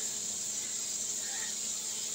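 Steady high-pitched hiss from a large pan of rice and chicken broth heating on a gas stove.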